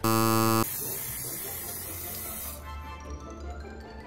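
A loud, low game-show-style wrong-answer buzzer sound effect lasting about two-thirds of a second, marking a fail. It is followed by about two seconds of hiss and then background music.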